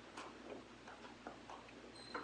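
Faint, irregular light clicks and taps of altar vessels being handled and wiped with a cloth, as the vessels are purified after communion.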